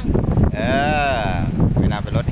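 A single drawn-out call about a second long, its pitch rising and then falling, over a steady low rumble of wind on the microphone.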